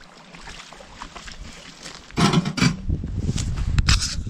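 Wheelbarrow with a child aboard being pushed along a wet gravel track: its wheel rolls and crunches over the stones, with footsteps. The rolling grows louder about halfway through, with a few knocks near the end.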